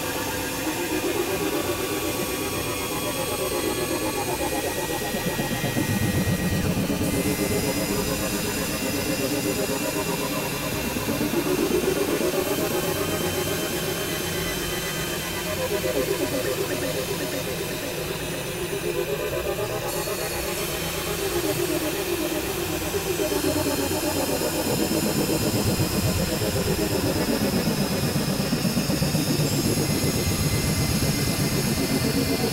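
Dense experimental noise-music: several tracks layered on top of each other and processed into a hissing, droning wash, with pitch sweeps gliding up and down every few seconds.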